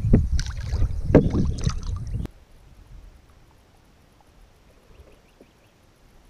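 Close, rumbling handling noise with scattered knocks on a kayak while a fish is held up to the camera, cut off abruptly about two seconds in. After that only faint, quiet ambience remains over calm river water.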